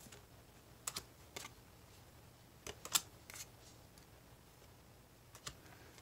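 Paper playing cards being handled and shuffled through by hand: about half a dozen faint, sharp clicks and snaps as cards are flicked and slid against each other. The loudest comes about three seconds in.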